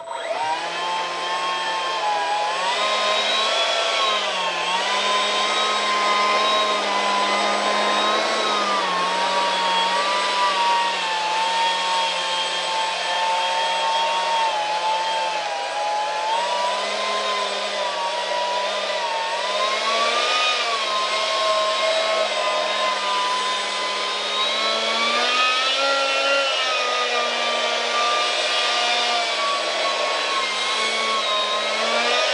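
A 70 mm electric ducted fan (Detrum) on a 4-cell 14.8 V lipo comes on abruptly and runs with a steady whine. Its pitch rises and dips a little several times as the throttle is moved.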